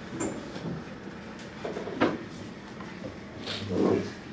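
Room noise in a pause between talks: scattered knocks and handling sounds, with a sharp knock about two seconds in and a louder low rumble of movement near the end.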